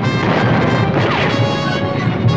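Busy orchestral cartoon score with a crashing sound effect, and a short falling whistle a little past a second in.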